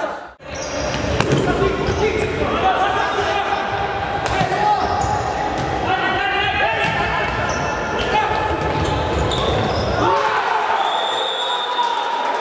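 A futsal ball being kicked and bouncing on a wooden hall floor, with sharp knocks among players' shouts, echoing through a large sports hall.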